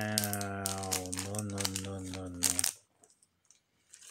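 A man's long, drawn-out vocal sound of admiration, one steady low note held for about two and a half seconds that falls slightly before stopping, over the crinkling of a plastic foil toy wrapper.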